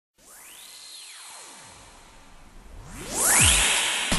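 Electronic music intro of experimental techno: a synthesizer tone sweeps up and back down over a hiss. About three seconds in, a noise riser swells and a second tone rises. It ends with a deep hit that falls in pitch, the loudest moment.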